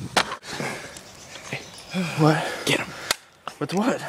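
Short bursts of a voice calling out, with a few sharp clicks in between.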